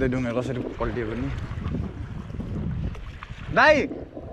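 A person's voice in short bursts with a low rumble of wind on the microphone underneath, and a loud short call, rising then falling in pitch, near the end.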